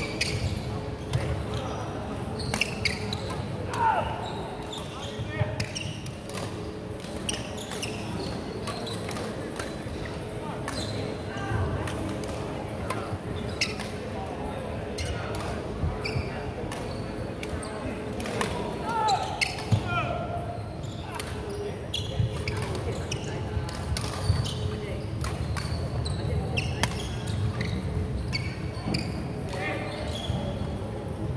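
Badminton play on a wooden court: sharp clicks of rackets hitting the shuttlecock and footfalls on the wooden floor, with short shoe squeaks about 4 seconds in and again near 19 seconds. Voices chatter in the background, echoing in a large hall.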